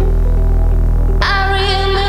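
Electronic music from a DJ set: a deep, sustained bass drone, joined about a second in by a bright, wavering melodic line.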